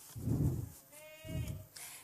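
A woman's faint, wordless voice: two low muffled sounds, and a short held tone about a second in.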